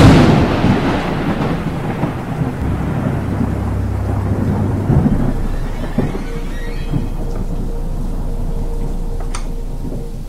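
Thunder: a sudden loud crack that rolls and rumbles for several seconds, fading into steady rain.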